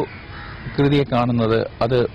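A man's voice speaking in short phrases, starting about a second in, after a brief pause.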